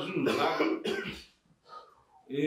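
A man clearing his throat with a short cough, lasting about a second, followed by a brief lull.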